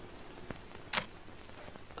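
A faint steady hiss, broken by a sharp click about halfway through and a fainter click just before it.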